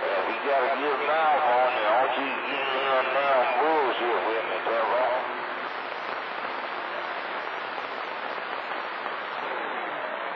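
A CB radio receiving skip on channel 28: a distant operator's voice comes through over static and is not clearly made out. The voice stops a little past halfway, leaving only steady static hiss.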